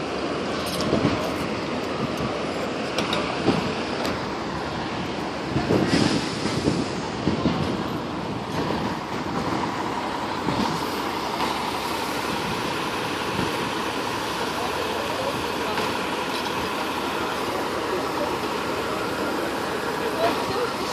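Steady street traffic noise with fire engines' motors running nearby, and a few brief bumps in the first several seconds.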